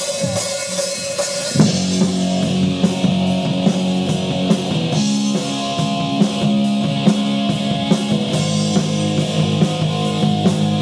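Live rock band playing an instrumental intro on electric guitars through amplifiers, bass guitar and drum kit. It opens on a single held note, and the full band comes in with a loud hit about a second and a half in, then plays on with a steady drum beat.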